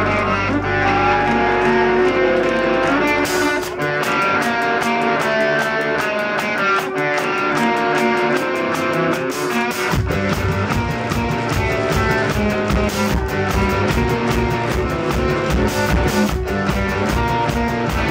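Live rock band playing an instrumental passage with guitar to the fore. The low end drops away about three seconds in, and drums and bass come back in with a fast, steady beat at about ten seconds.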